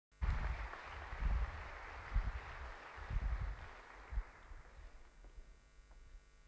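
Audience noise in a lecture hall: a broad rustle that fades away over about five seconds, with soft low thuds roughly once a second.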